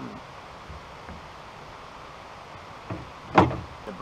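Coot ATV rolling slowly over a rough woodland trail: a steady low running noise with scattered knocks from the body, and one sharp, loud clunk about three and a half seconds in.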